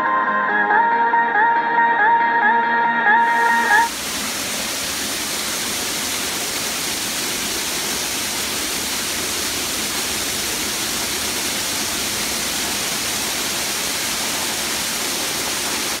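Background music ends about four seconds in, giving way to the steady rush of water falling close by from a small garden waterfall.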